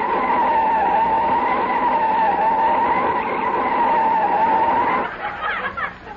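A radio sound effect of car tyres screeching as the car brakes hard and skids: one long, slightly wavering squeal that cuts off about five seconds in.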